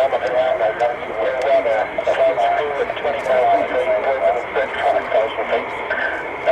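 Muffled, narrow-sounding voice chatter over an air-band radio scanner, with a steady high whine underneath from the Lockheed U-2S's jet engine running on the runway.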